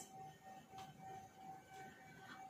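Near silence: room tone with a faint, steady high-pitched hum.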